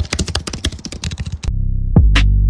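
A rapid run of clicks like keyboard typing, used as an editing sound effect. About one and a half seconds in, a loud, steady low synth bass tone sets in and holds.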